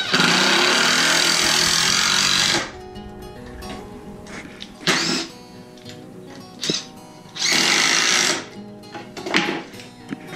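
Cordless drill driving screws into wood: a long run of about two and a half seconds at the start, a few short bursts, then another run of about a second.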